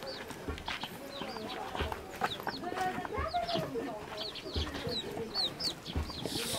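Chickens clucking, with many short high chirps running through, over footsteps on a dirt path about once every second and a half.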